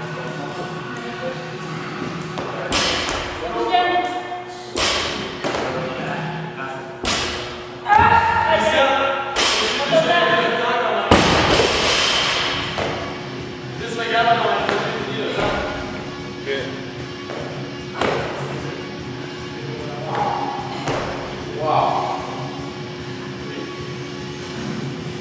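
Feet landing on a wooden plyo box during box jumps, sharp thuds every second or two, with voices and music going on in the background.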